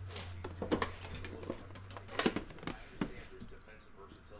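Metal trading-card tin being opened by hand: a few scattered clicks and taps as the lid comes off and the card box inside is lifted out.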